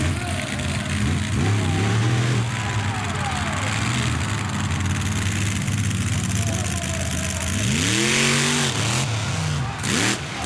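Monster truck engines running loudly on the arena floor, with one hard rev rising and falling about eight seconds in. A sharp bang comes near the end as the truck launches at the row of cars.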